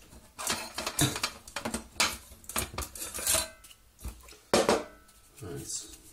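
Metal camping cookware clinking and clattering as a pot stand and windshield are drawn out of a cook pot and handled: a run of irregular knocks and clinks, with a sharper strike about four and a half seconds in.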